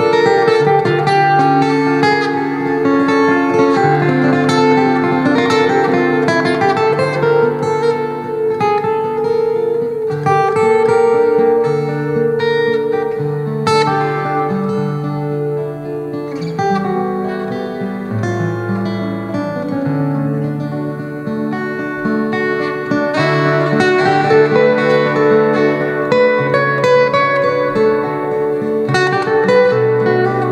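Solo acoustic guitar playing an instrumental piece: a moving bass line under ringing, sustained melody notes.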